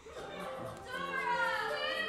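A girl's voice from the stage, a long drawn-out call that starts about halfway in and arches up and then down in pitch, in a large hall.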